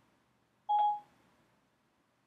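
A single short electronic beep from iOS 7 Siri on an iPad, the tone it gives when it stops listening after a spoken request, about two-thirds of a second in, with silence around it.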